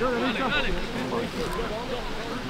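Indistinct shouts and talk of footballers and spectators calling across the pitch during a match.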